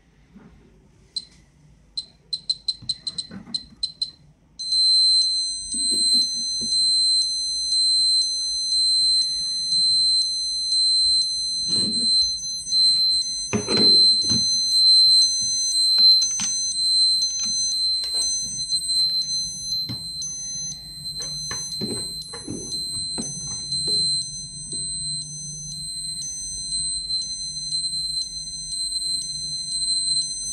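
Ecotest TERRA MKS-05 dosimeter beeping high and shrill: a few single beeps, then quickening beeps, then about four and a half seconds in a continuous alarm tone with a pulse about once a second. This is the dose-rate alarm, with the reading at 2.5 µSv/h, well over the 0.30 µSv/h threshold. Handling knocks come in the middle.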